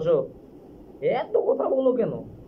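Speech only: a man talking, with a short pause just after the start and a drawn-out, pitch-swooping phrase from about a second in.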